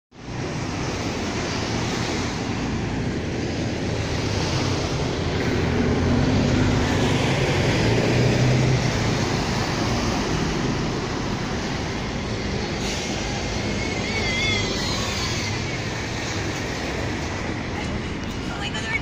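Road traffic: a steady rush of cars passing on a seafront road, with one vehicle passing louder about six to nine seconds in. A brief wavering high-pitched sound comes near the end.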